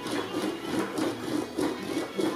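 English wheel rolling an annealed aluminium half-shell back and forth between its wheels, a rhythmic, evenly repeating metal rolling sound as the sheet is smoothed.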